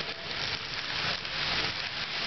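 HO-scale model diesel locomotive and freight cars running past on the track, a steady noisy rolling sound.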